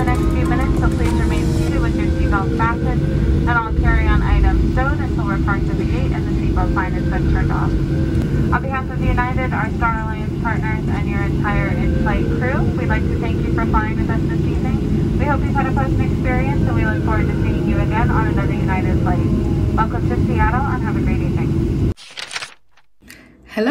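Jet airliner heard from inside the cabin while taxiing: a steady low engine rumble with a constant hum, and indistinct voices over it.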